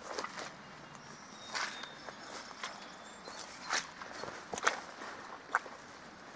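Footsteps through dry, matted grass and brush: irregular rustling steps with a few sharper snaps.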